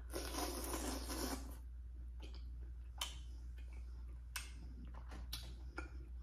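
A close-miked bite into a sauce-coated piece of seafood-boil food, a wet noisy burst lasting about a second and a half. Chewing follows, with three sharp mouth smacks.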